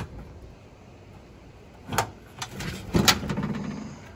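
Latch of an aluminum diamond-plate toolbox being released and the lid lifted open: a sharp metallic click about two seconds in, then more clicks and a rattle of the metal lid around three seconds in, the loudest part.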